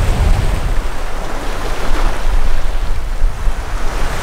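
Wind noise on the microphone over the wash of small waves breaking on a sandy beach.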